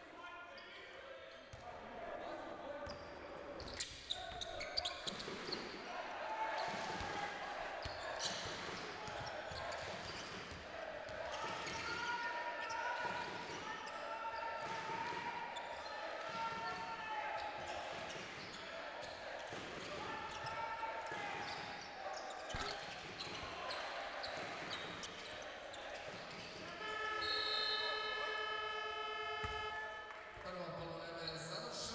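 A basketball being dribbled and bounced on a hardwood court, with voices calling out across a large hall. About three seconds before the end, a loud, steady electronic buzzer sounds for about three seconds: the horn marking the end of the quarter.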